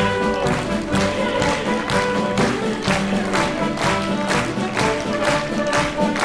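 Live orchestra playing a lively operetta tune with sustained notes over a regular beat of sharp strokes, about two a second at first and quicker in the second half.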